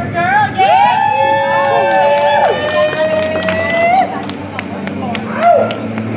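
Several voices calling out together in overlapping whoops that slide up and down and then hold long, steady notes at different pitches, with a few sharp clicks among them.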